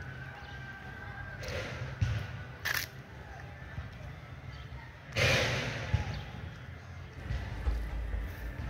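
Outdoor ambience on a walk: a steady low rumble on the microphone, faint distant voices, a few short noisy bursts, and a louder noisy burst about five seconds in.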